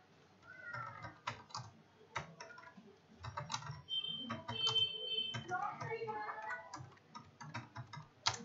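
Computer keyboard keys clicking at an irregular pace as code is typed, with faint wavering pitched sounds in the background, including a brief steady high tone around the middle.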